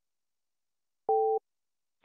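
A single short two-tone telephone beep on a conference-call line, lasting about a third of a second, about a second in; otherwise the line is silent.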